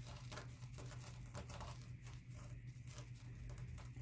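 Potato chips being crushed by hand inside a folded paper towel: faint, irregular crunching and paper crinkling, over a low steady hum.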